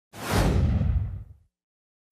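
Whoosh sound effect of a video logo intro: one rush of noise that swells in a fraction of a second and fades away by about a second and a half in.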